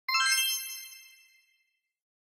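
A bright, bell-like chime struck once at the start of a production-company logo sting. It rings with many clear overtones and fades out over about a second and a half.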